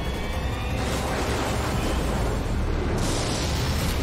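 A loud, steady low rumble under a broad roar that changes in texture about a second in and again near the end: storm thunder over the cabin noise of a Dornier twin turboprop flying through a thunderstorm.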